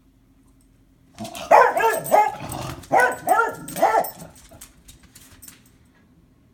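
Beagle barking: a run of about five loud barks from about one second in to about four seconds in, then quiet.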